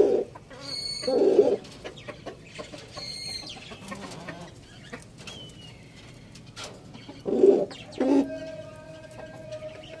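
Domestic fowl giving short, low calls: four brief calls in two pairs, near the start and about a second in, then around seven and eight seconds in. Fainter high chirps sit between them.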